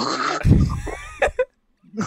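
Men laughing over a video call, with a loud low rumble of breath or handling on a microphone about half a second in and a few sharp clicks before it falls quiet.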